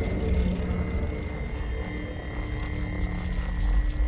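Movie soundtrack: a low, steady rumble under a faint drone of a few held tones.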